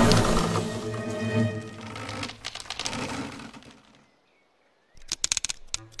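Cartoon film score with held notes, fading out over about four seconds into a second of silence. A quick run of sharp crackling clicks follows about five seconds in.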